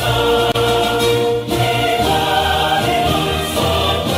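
Choral music: voices singing long held notes over sustained low accompaniment notes that change about once a second.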